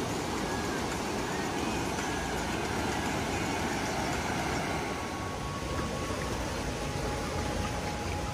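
Fast-flowing river water rushing over rocks, a steady noise.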